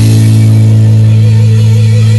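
Live rock band holding a loud sustained chord, electric guitar and bass ringing on a steady low note with a wavering higher tone above it and no drumbeat.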